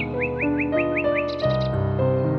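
Soft, slow piano music with birdsong over it: a run of about six quick rising chirps in the first second, then a brief burst of higher, shorter notes.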